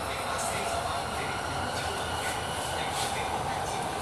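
Steady running noise inside a Bangkok Purple Line metro car moving along the elevated track, an even rumble and hum with faint clicks from the wheels.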